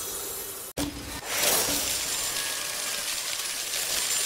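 Glassy, clinking and shattering sound effects of an animated outro. The sound cuts out for a moment about three-quarters of a second in, then comes back as a bright, high shimmering wash.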